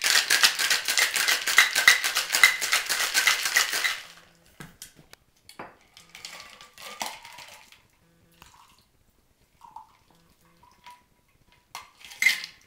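A cocktail shaker shaken hard with ice cubes inside: a loud, rapid rattle of ice against metal for about four seconds, then it stops. Quieter clinks and handling noises follow as the shaker is opened and set to pour.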